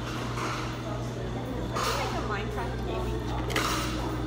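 Indistinct voices in the background over a steady low hum, with brief bursts of higher hiss.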